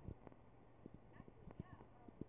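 Near silence: room tone with faint, irregular clicks and taps, and a faint voice in the background about a second in.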